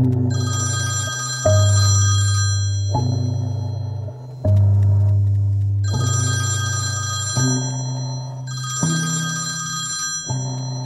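Phone ringing: two electronic bell-like rings of about three seconds each, with a pause of about three seconds between them, over a low sustained note that changes about every second and a half.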